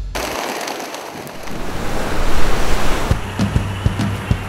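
A rushing, surf-like swell of noise that builds for about two and a half seconds, then drops away; a low beat comes in near the end.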